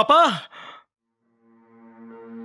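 A man cries out "Papa?" once, his voice rising and then falling steeply, and the cry trails off into a short breath. After about half a second of silence, soft held music fades in.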